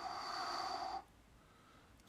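A man's breathy exhale through nose or mouth, about a second long at the start, with no voiced sound.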